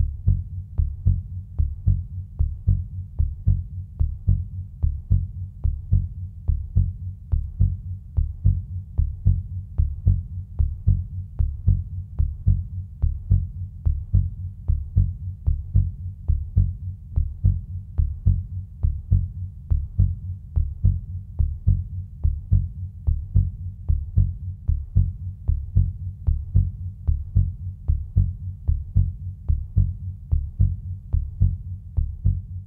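A low, steady pulsing beat, a heartbeat-like thump repeating evenly throughout, used as a soundtrack under the opening titles.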